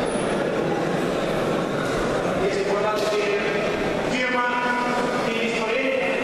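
A man's voice over a public-address system, drawn out and echoing in a large hall.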